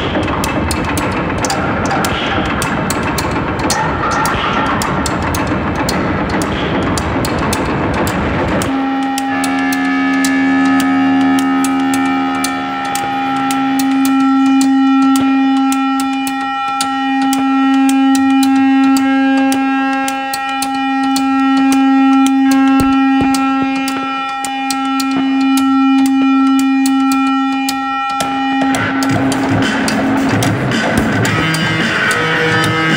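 Experimental psych rock: dense distorted guitar and drums drop out about nine seconds in to a single sustained droning note that swells and fades every four seconds or so over a fast clicking pulse. The full band crashes back in near the end.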